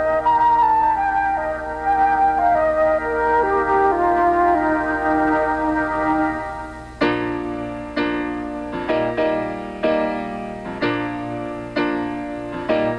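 A solo flute plays a slow, stepping melody of held notes. About seven seconds in it gives way to a new piece of music that opens with sharp, quickly fading chords in a lilting rhythm.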